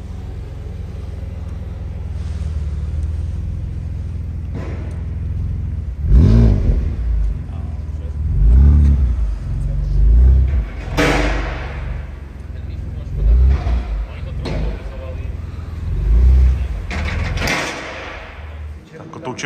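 BMW M2 Competition's twin-turbo inline-six idling steadily, then given about five short bursts of throttle as the car is driven slowly onto the lift ramps.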